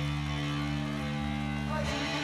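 Electric guitar amplified through a stage amp, a held chord ringing steadily with no drums playing.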